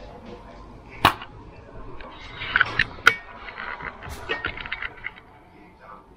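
Handling of a motorized window shade's plastic battery tube: a few sharp clicks and knocks, with clusters of lighter, rapid rattling clicks between them.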